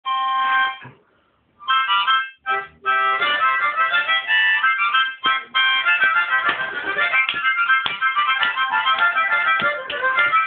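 Harmonica played solo: an opening held chord, a brief pause, then a fast run of notes and chords of a pirate theme tune.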